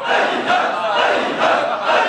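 Large crowd of men shouting a slogan together in unison, swelling in rhythmic surges about twice a second.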